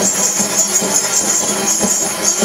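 Hand-held frame drums beaten together in a steady rhythm, about three or four strokes a second, each stroke a dull thud with a jingling shimmer.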